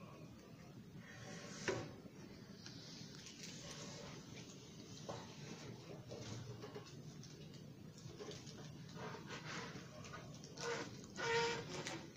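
Quiet rustling and crinkling of plastic crisp packets being handled on a table, with a sharp click about two seconds in and a brief pitched sound near the end.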